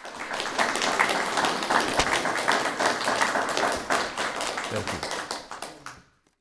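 Audience applauding, a dense patter of many hands clapping that thins and fades out near the end.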